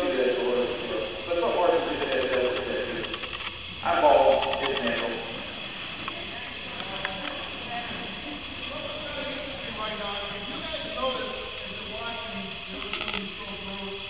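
Indistinct voices talking, louder in the first few seconds and then fainter murmuring.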